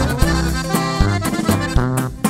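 Accordion-led regional Mexican band music in an instrumental passage between sung lines: the accordion plays a fill over a steady beat with low bass notes.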